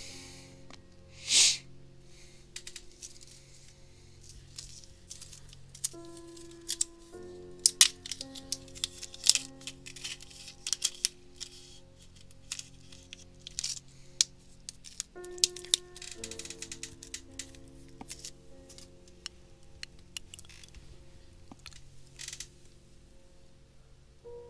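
Quiet instrumental background music with slow, held notes, over scattered small clicks and taps of fly-tying tools and materials being handled on the bench. A short burst of rustling noise comes about a second and a half in.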